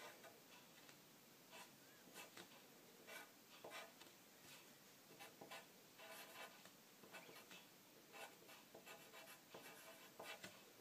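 Pencil writing on paper, close up: faint, irregular short scratching strokes, several a second, with brief pauses between bursts of writing.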